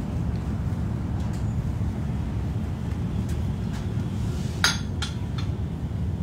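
A steady low wind rumble on the microphone. About four and a half seconds in there is one sharp, ringing clink, then two lighter clicks: altar vessels being set down and handled on the altar during communion.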